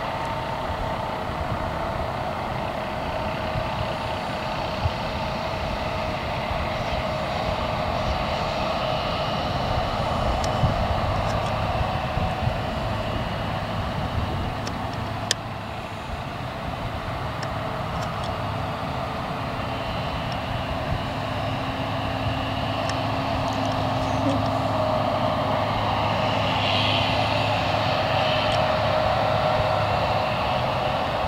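Diesel engines of a New Holland combine harvester and a John Deere tractor running steadily at harvesting work, with one sharp click about halfway through.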